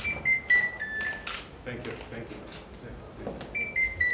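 A short electronic tone sequence of four notes stepping down in pitch plays at the start and begins again near the end, over scattered sharp clicks and faint background voices.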